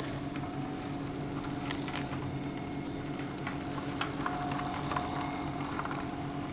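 Motorized LEGO train running on plastic LEGO track: a steady motor hum with scattered light clicks from the wheels.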